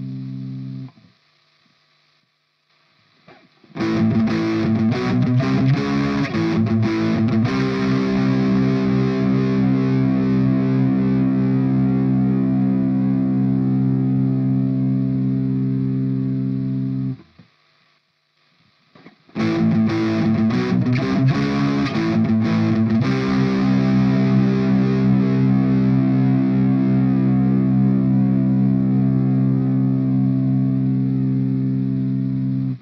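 Distorted electric guitar, a Squier Stratocaster played direct through a Line 6 POD HD500 amp model. Each pass is a short run of picked notes that settles into a held chord, ringing for about ten seconds until it is cut off. The phrase is played twice with a pause between, first through the Red Comp compressor model and then through the Blue Comp, so the two compressors' sustain and squash can be compared.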